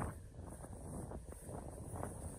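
Wind buffeting the microphone: a faint, steady low rumble.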